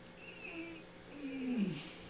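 A man's closed-mouth moans through lips sewn shut: a short low hum, then a longer, louder groan that falls in pitch.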